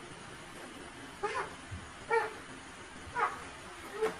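A series of short, high-pitched cries, one about every second, each a brief pitched call rising and falling.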